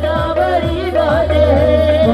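Devotional song: a singer holds long, wavering notes between lyric lines, over hand-drum strokes that bend down in pitch.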